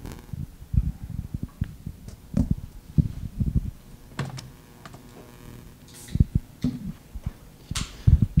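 Handling noise of equipment being set up at a lectern: irregular low thumps, knocks and a few sharp clicks, with no steady sound.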